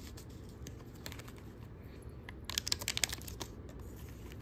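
Small foil wipe packets rustling and crinkling as they are handled and pushed into a small fabric zip pouch: scattered light clicks, then a quick run of sharp crackles a little past halfway.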